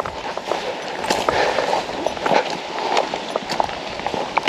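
Footsteps of people walking along a paved road, with irregular light taps and clicks over a steady hiss.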